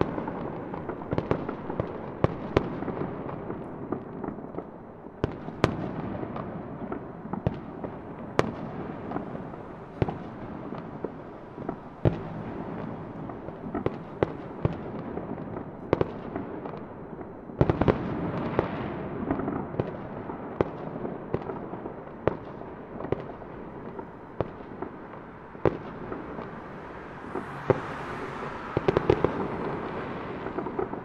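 Fireworks display: irregular sharp bangs, several a second at times, over a continuous rumble of more distant bursts and crackle. A brief hiss rises near the end.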